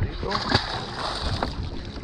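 Steady wash of water and wind alongside a boat's side, with a couple of short knocks about half a second and a second and a half in.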